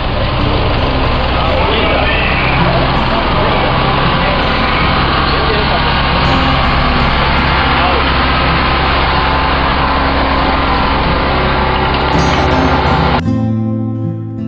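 Isuzu light truck's engine running steadily under a loud, even wash of noise, with voices in the background. About a second before the end it cuts to acoustic guitar music.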